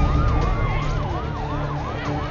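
Emergency vehicle siren in a rapid yelp, sweeping down and up about four times a second, with a steady tone held beside it that slowly drops in pitch, over a low rumble.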